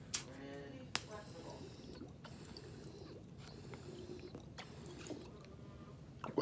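Water gurgling in the glass attachment of a Focus V Carta e-rig as someone draws a hit through the mouthpiece, with two sharp clicks in the first second.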